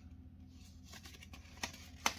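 Faint handling of a cardboard Blu-ray case and its folded paper insert: a few light scrapes and clicks as the insert is worked out of a narrow pocket, with one slightly sharper click about one and a half seconds in.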